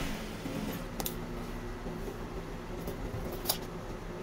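A steady low hum of room equipment, broken by two short clicks: a faint one about a second in and a sharper one near the end, as a tape measure and a wooden ruler are handled and laid down on the fabric-covered cutting table.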